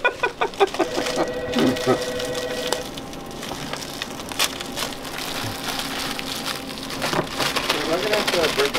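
Oreo cookies being tipped out of their plastic sleeve and dropped onto a paper-covered table: a run of light clicks and clatter as the cookies land on one another.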